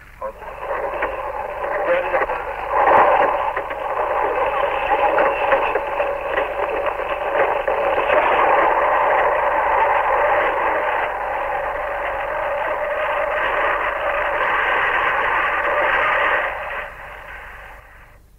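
Archival radio actuality recording of anti-aircraft artillery fire: continuous rapid firing heard through narrow-band, noisy old broadcast audio, fading out near the end.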